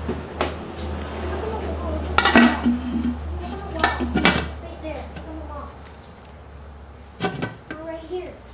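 Hard plastic clattering and knocking as the clear canister and white ported lid of a plastic bubbler are handled and knocked together, several sharp knocks scattered through, over a steady low hum.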